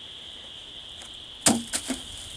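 A few sharp woody cracks close together about one and a half seconds in, over a steady high-pitched drone.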